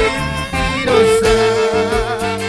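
Live Latin dance orchestra playing with a steady beat of bass and percussion; about halfway through, the horn section comes in on a long held note.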